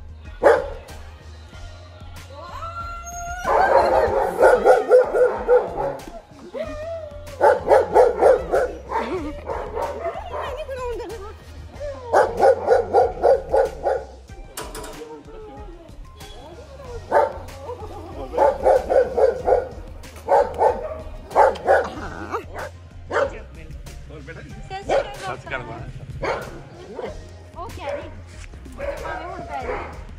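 A dog barking at the gate in quick runs of yaps, several bursts of rapid barks a few seconds apart, with music and voices underneath.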